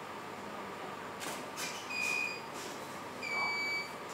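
A few sharp clicks, then two steady electronic beeps, each about half a second long, the second longer than the first.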